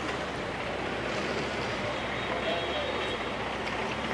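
Steady road-traffic noise with faint voices in the background, a continuous even rumble and hiss with no distinct events.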